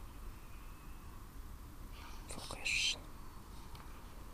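A brief whispered, hissing breath-sound from a person close to the microphone, about two and a half seconds in, over a low steady rumble.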